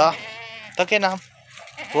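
A young goat kid bleating: one wavering, quavering call in the first half-second or so.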